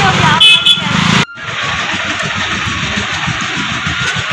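Busy street traffic of motorcycles, scooters and auto-rickshaws, with a short high-pitched sound about half a second in. The sound breaks off abruptly a little after a second in and carries on as steadier, somewhat quieter street noise.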